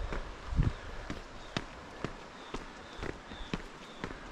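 Footsteps walking on a concrete path at a steady pace, about two steps a second.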